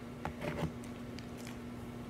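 A steady low hum with a few faint clicks in the first half second or so.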